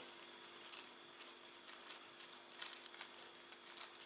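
Faint, light rustling and small ticks of a paper tea bag and its tag being handled and unfolded by hand, over a faint steady hum.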